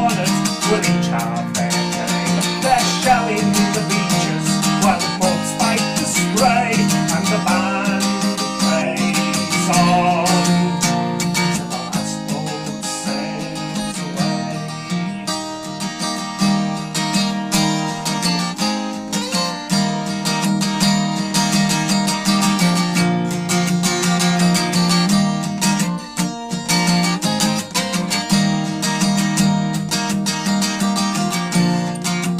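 Acoustic guitar strummed steadily through an instrumental break between sung verses of a folk song.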